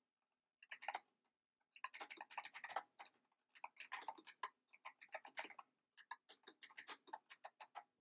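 Computer keyboard being typed on: a run of faint, irregular keystroke clicks as a command is entered at the Windows command prompt.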